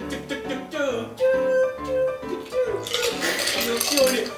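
Light background music played on a plucked string instrument, with a loud breathy rush of noise near the end.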